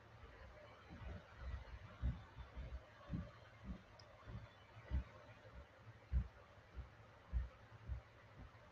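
Faint, irregular low thumps, roughly one or two a second, over a quiet hiss: an unwanted noise on the webinar audio that the speaker puts down to her computer overheating.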